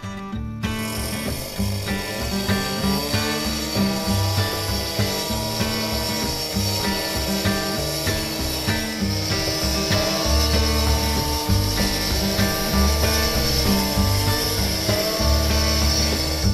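Background music with a pulsing bass and melody, laid over a gas-powered cut-off saw running steadily as it saw-cuts control joints into a cured concrete slab.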